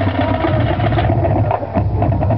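Marching band playing: the low brass holds a steady low note under drum strokes, and the higher instruments thin out about halfway through.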